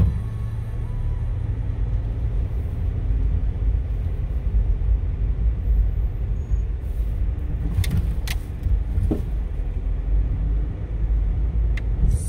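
Low, steady rumble of a car driving slowly along a town street, heard from inside the cabin, with a few light clicks about two-thirds of the way through.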